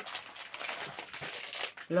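Clear plastic packaging of a cross-stitch kit crinkling and rustling as it is opened by hand and the printed chart inside is pulled out.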